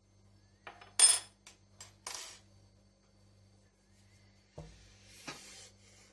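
A bread machine's black kneading paddle and its thin metal hook tool being set down on a countertop. There is a sharp metallic clink with a brief high ring about a second in, a few lighter clicks around it, and a duller knock near the end.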